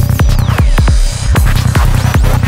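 Fast electronic dance track at 154 bpm: a driving kick drum with a rolling bassline between the beats and falling synth sweeps above, with a brief dip in the beat about a second in.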